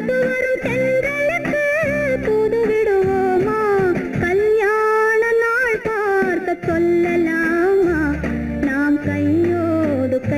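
Old Tamil film song music: a high melodic line that glides and bends, which sounds like a sung vocal, over plucked guitar and a bass part that drops in and out.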